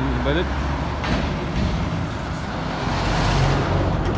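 Road traffic passing close by: cars and a van drive past with tyre and engine noise over a low engine rumble. The noise swells loudest as a vehicle goes by about three seconds in.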